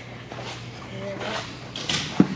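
Quiet indoor room tone with faint, indistinct speech in the background and a low steady hum.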